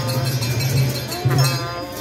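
Newar festival dance music: metal cymbals ringing over a continuous low sound, with a sustained pitched line that slides up and down.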